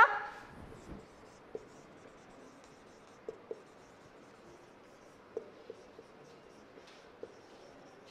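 Felt-tip marker writing on a whiteboard: faint strokes with short, scattered squeaks and taps as the letters are drawn.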